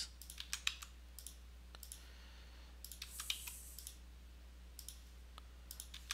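Scattered clicks of a computer mouse, single and in small groups, over a steady low hum.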